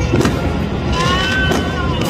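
Fireworks going off in dense volleys: a steady low rumble with several sharp pops and crackles. About a second in, a wavering horn-like tone sounds for under a second over the blasts.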